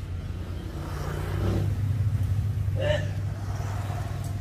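A motor vehicle's engine running close by, growing louder through the middle and easing off near the end, over a steady low hum.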